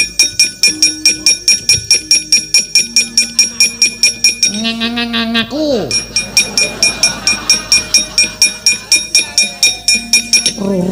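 A wayang kulit dalang's kepyak, the metal plates hung on the puppet chest, struck in a steady rapid rhythm of about three to four ringing clanks a second to accompany the puppets' movement. A man's voice calls out briefly about halfway through.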